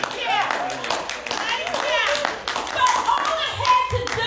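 Irregular hand clapping mixed with a woman's voice calling out through a microphone.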